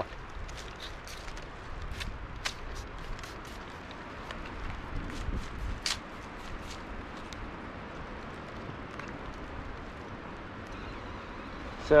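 Hand trigger spray bottle squirting saltwater onto muddy fingers: many short, sharp spritzes in quick succession over the first half, fewer later on.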